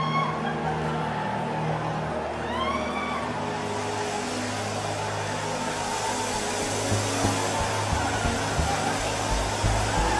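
Soft sustained keyboard chords under a large congregation's voices: two rising cries in the first three seconds, then a growing murmur of many people praying aloud from about four seconds in.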